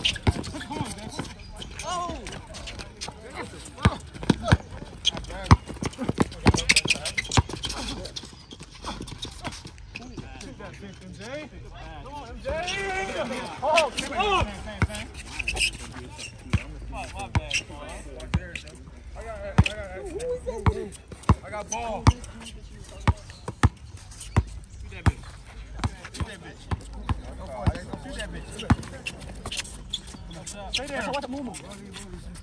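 A basketball being dribbled and bounced on asphalt, sharp bounces throughout, with players' voices and shouts around it, strongest about halfway through.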